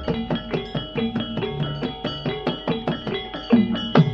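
Javanese gamelan music for jathilan dance: a quick, even pulse of struck metal and drum strokes over ringing pitched tones, with a deeper drum stroke near the end.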